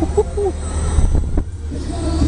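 Steady low rumble of wind and motion on a spinning KMG X-Drive fairground thrill ride, heard from the rider's seat. Brief rider whoops come near the start and a few knocks around the middle.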